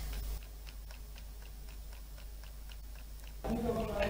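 Faint, even ticking, about four to five ticks a second. Near the end a low hum and room tone come in.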